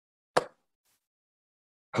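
A single short pop about a third of a second in, out of dead silence; a voice starts right at the end.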